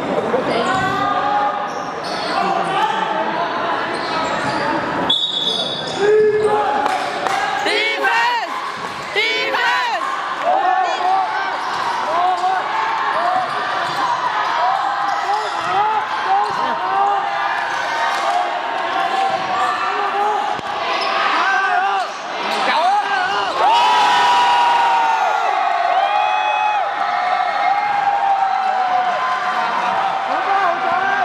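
Basketball bouncing and sneakers squeaking on a wooden gym floor during a game, with voices calling out across an echoing hall.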